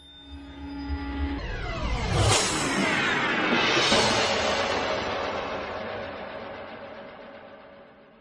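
Logo-animation sting: a whooshing swell with a low rumble builds over about two seconds to a bright hit, followed by a long shimmering tail that slowly fades out.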